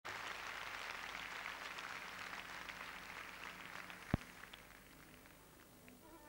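Audience applause dying away over about five seconds, with one sharp thump about four seconds in.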